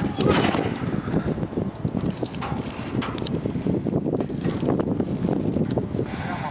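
Wind buffeting the camera microphone, an uneven rough rumble with many small crackles and rustles.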